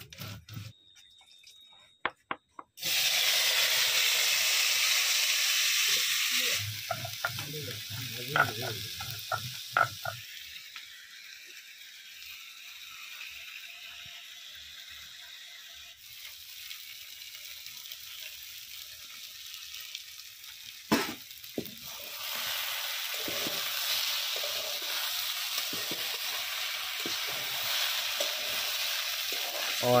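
Chopped brinjal and taro frying in hot oil in an iron kadhai: a loud sizzle starts suddenly about three seconds in, eases to a steady quieter frying hiss after a few seconds, and grows louder again near the end with the clicks and scrapes of stirring.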